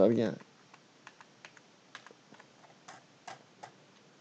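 Computer keyboard typing: about a dozen light, irregularly spaced key clicks, faint against the room.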